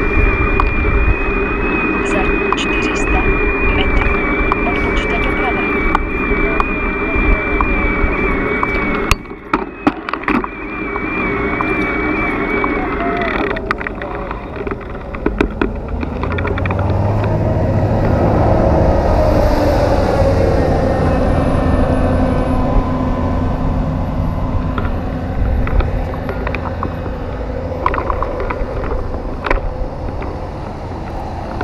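Riding noise on a bicycle: wind on the microphone and tyres on a paved road. A thin steady whine runs through the first half and stops about thirteen seconds in. There is a brief lull with a few clicks about nine seconds in.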